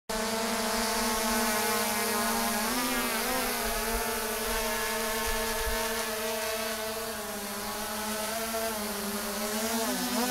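DJI Spark quadcopter's propellers and motors humming steadily with several tones at once. The pitch wavers briefly about three seconds in and again near the end as the motors adjust.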